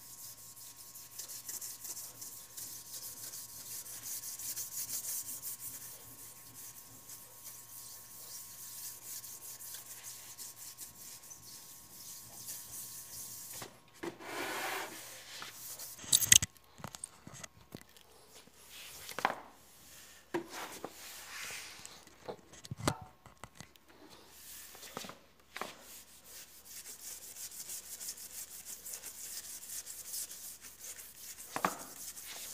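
Hand scrub brush scrubbing a hard, polished floor, a steady back-and-forth rasping of bristles on the surface. About halfway there is a sharp knock, after which the scrubbing comes in separate short strokes before turning steady again near the end.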